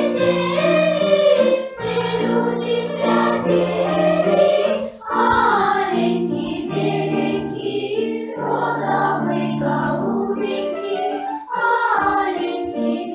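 Children's choir singing a Russian folk song, its phrases separated by short breaks.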